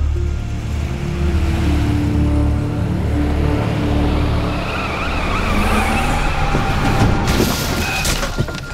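Car traffic with engine and road rumble and tyres squealing as the vehicles swerve and brake, then a clattering crash about seven seconds in as a car ploughs into a roadside stack of foam boxes. Dramatic music runs underneath.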